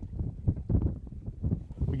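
Wind buffeting the microphone, a low uneven rumble.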